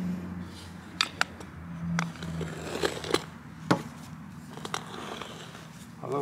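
Metal corkscrew tie-out stake being screwed into the ground with a wooden dowel as a lever: scattered sharp clicks and scrapes of metal against wood as it turns.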